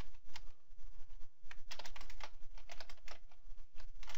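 Typing on a computer keyboard: quick, irregular runs of key clicks, busiest in the second half.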